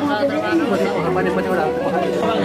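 Several voices talking over one another at the same time, with no single speaker standing out.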